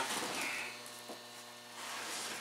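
Low, steady electrical hum in a quiet room, with faint rustling about half a second in and a small tick a second in.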